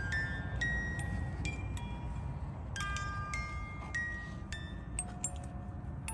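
Small wooden music box playing a slow tune, single plucked metal-comb notes ringing out one after another, over a steady low rumble.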